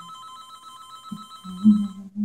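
Telephone ringing: an electronic ring, a rapid warbling tone lasting about two seconds. A person hums along over its second half.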